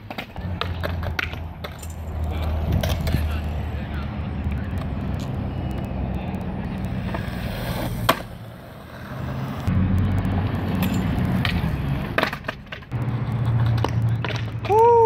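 Skateboard wheels rolling on concrete with a steady low rumble, broken by sharp clacks of the board striking the ground. There is one loud clack about eight seconds in, a short quieter gap, then the rolling picks up again with a cluster of clacks near the end.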